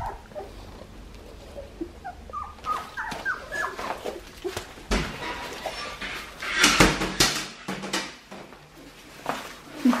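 Two-and-a-half-week-old Australian Shepherd puppies squeaking and whimpering in a run of short, high, rising cries. This is followed by a burst of loud rustling and scuffling in the wood-shaving bedding near the middle.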